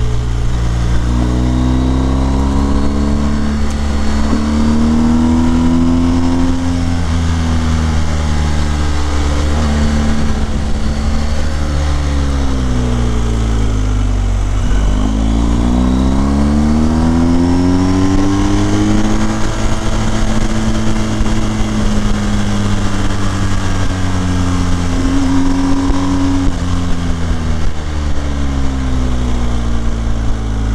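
BMW R 1250 GS boxer-twin engine heard from the bike while riding, its revs rising and falling, over a steady rush of wind and road noise. About halfway through the revs drop low, then climb steadily for several seconds as the bike accelerates.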